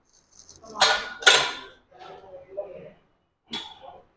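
Weight plates clinking and rattling on a barbell as it is curled: two loud clanks about a second in, weaker sounds after them, and another clank near the end.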